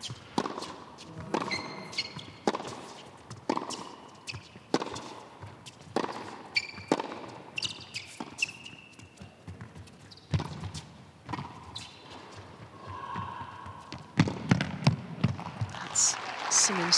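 Tennis ball struck back and forth by rackets in a long baseline rally on an indoor hard court, a sharp hit or bounce about once a second, with short high squeaks of shoes on the court between shots.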